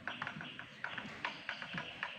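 Footsteps on a rocky, sandy floor: a quick, uneven run of light taps and scuffs, several a second.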